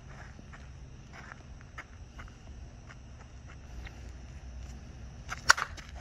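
A Suncoast slowpitch softball bat striking a pitched softball once, a single sharp crack about five and a half seconds in, after a few seconds of low background with faint scattered clicks. It is solid contact, a good hit.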